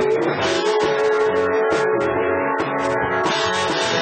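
Live country band playing with no singing: electric guitar over drums.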